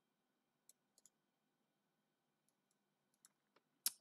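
Near silence broken by a few faint, scattered clicks from computer controls being worked: a pair about a second in, then a few more near the end, the last the sharpest.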